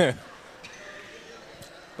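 Faint gymnasium ambience, a low murmur of the hall, after a spoken word trails off at the start. A single faint knock comes near the end.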